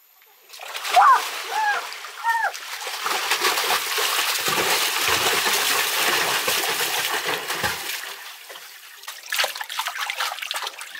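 Water splashing and churning in a shallow concrete pool, starting about half a second in, loud through the middle and easing off, with fresh splashes near the end. Three short voice calls sound about a second in.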